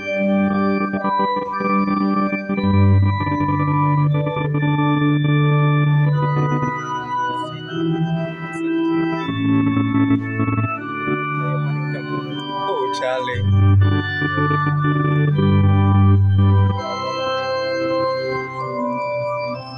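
Organ playing slow, sustained chords, each held for a second or two before moving to the next.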